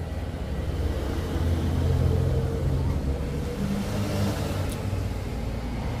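A low mechanical rumble that swells over the first two seconds and then holds steady.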